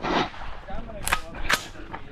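Two sharp gunshots, about a second in and less than half a second apart.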